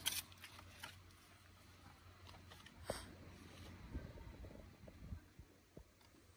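Mostly quiet, with a few faint, sparse clicks and knocks from a street-food vendor handling a bowl and bottles at his cart, and a faint low rumble near the middle.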